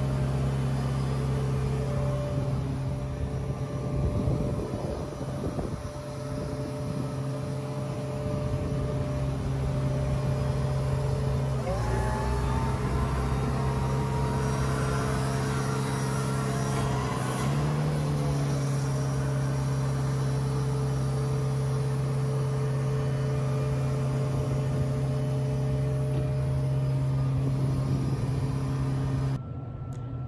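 Engine of a Hako Powerboss ride-on industrial sweeper running at a steady speed. About twelve seconds in its pitch sags under load and a rising whine sets in as the hydraulics move the hopper; some five seconds later the engine picks back up.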